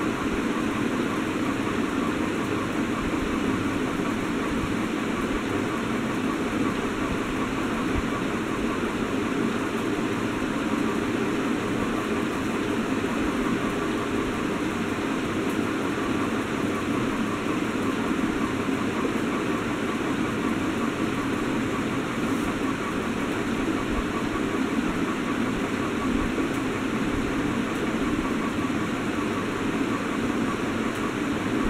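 Steady, even background noise with no breaks or changes in level.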